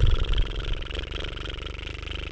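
A cat purring: a fast, even, rumbling pulse that slowly fades.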